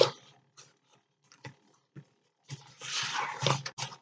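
Paper and cardstock being handled and flexed by hand: a sharp tap at the start, scattered light clicks, then about a second of continuous paper rustling near the end.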